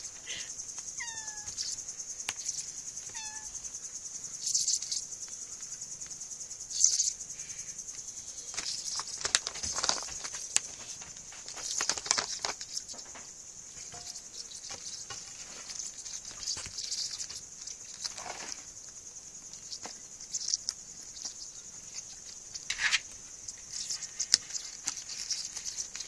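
Kittens scuffling and pawing at a beetle on a floor, in short rustling scrabbles, with a steady high-pitched insect trill behind them throughout. Two short falling chirps sound in the first few seconds.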